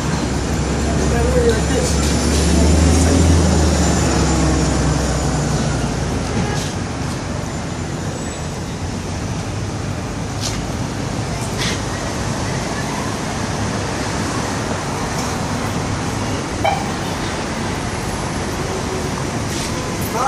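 City street traffic: a large vehicle's engine drones close by for the first six seconds or so, loudest about three seconds in, then steady traffic noise continues.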